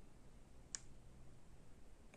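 Near silence, with one faint click about three quarters of a second in: the small plastic door contact sensor handled as its pairing button is pressed.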